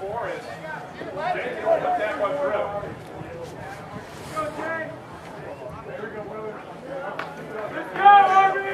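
Indistinct talk of several people, quieter than close speech, with a sharp click about seven seconds in.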